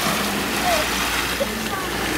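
Steady rush of wind and sea water along a sailing boat's hull as it moves through the waves, with faint snatches of voices.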